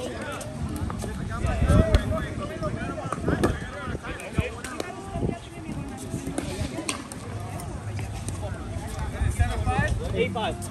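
Voices talking, overlapping, with a few sharp knocks, the loudest about two seconds in.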